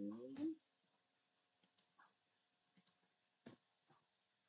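Faint, scattered computer keyboard keystrokes, several separate clicks, as a number is typed into a spreadsheet cell and entered.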